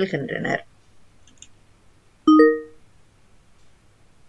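A short electronic notification chime, sounding once about halfway through: a click at the start, then several ringing tones that fade within about half a second. Before it, a recorded voice reading a Tamil sentence plays back from the computer and ends about half a second in.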